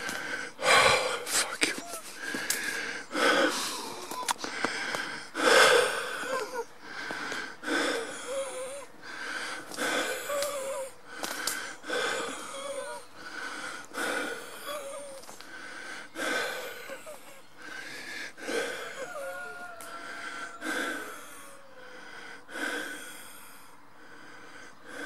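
A person breathing heavily close to the microphone, one audible breath about every second.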